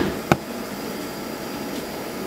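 Steady whir of neonatal incubator and breathing-support equipment, with two sharp clicks about a third of a second apart at the start.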